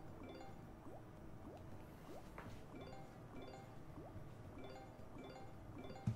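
Faint background music from the Big Bass Amazon Xtreme slot game: a looping pattern of short plucked notes with a quick upward-sliding note about every half second.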